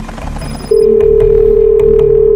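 Telephone ringback tone: one loud, steady buzzing tone that starts under a second in and holds, over quiet background music.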